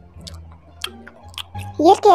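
A person eating instant cup noodles: chewing, with a few short sharp clicks. Near the end a voice with a gliding pitch breaks in.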